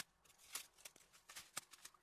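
Faint rustling with a string of light clicks and taps, about six in two seconds, as hands handle small objects.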